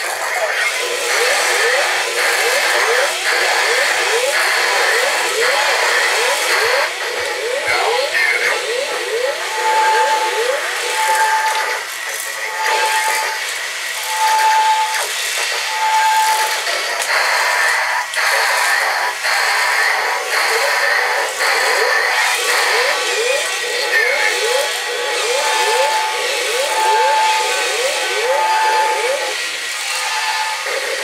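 Hap-P-Kid Turbo Fighter walking toy robots playing electronic sound effects through their small speakers: a stream of quick rising laser-like zaps several times a second, with runs of evenly spaced beeps and robotic voice and music sounds mixed in.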